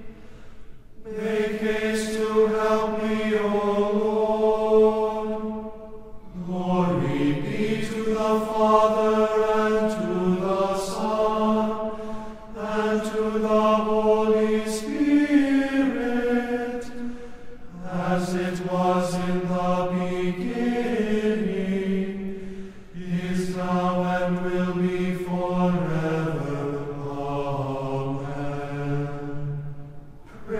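A voice singing the chanted opening versicles of Matins from the hymnal, in phrases of held notes with short breaks between them every five or six seconds.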